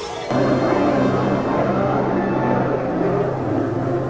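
Background music added in editing, which swells suddenly about a third of a second in and carries on over a held low note.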